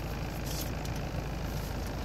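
Steady low rumble of an idling vehicle engine, heard from inside the cabin.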